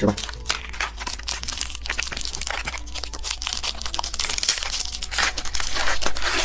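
Plastic candy wrapper crinkling and tearing as it is unwrapped by hand: a dense, uneven run of sharp crackles.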